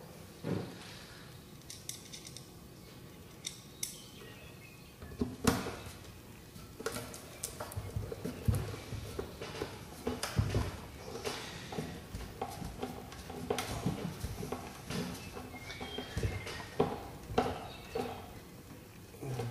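Irregular small clicks, taps and scrapes of screws being handled and turned in by hand, fastening a plexiglass window to a wooden beehive box. The clicks come thicker from about five seconds in.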